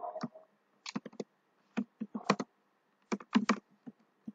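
Computer keyboard keys clicking as text is typed: about a dozen separate keystrokes in small clusters of two to four, with short pauses between.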